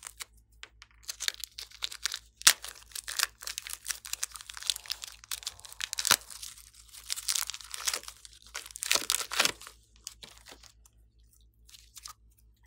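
Thin clear plastic piping bag crinkling and crackling as hands squeeze it and peel it off a sticky lump of slime: a dense run of crackles from about a second in that thins out near the end.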